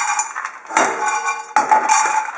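Pine nuts poured from a plastic tub into a frying pan, rattling against the pan for toasting. They come in several pours: a brief lull just before a second in, then two more sharp pours.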